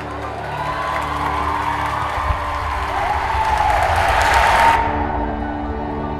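Music with an audience applauding and cheering. The crowd noise swells and then cuts off suddenly near the end, leaving quieter music.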